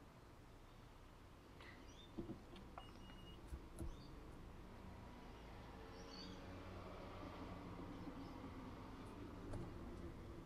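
Faint low rumble of a car creeping along, heard from inside the cabin, growing a little in the second half. A few faint bird chirps come through about two seconds in and again around six seconds, with a couple of soft clicks.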